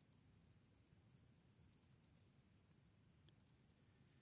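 Near silence with faint computer mouse clicks: one at the start, then two quick runs of three or four clicks, about two seconds in and near the end.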